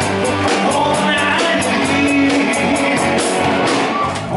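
Live rock and roll band playing: a male singer over electric guitars and a drum kit, with the cymbals struck on a steady beat.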